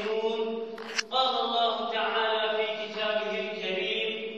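A young man's voice chanting Arabic in long, held melodic phrases, the chanted Arabic opening of a Friday sermon, with a short break for breath about a second in.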